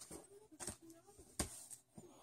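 Faint handling noise of a paper record sleeve being moved: a few soft taps and rustles, the sharpest tap about one and a half seconds in.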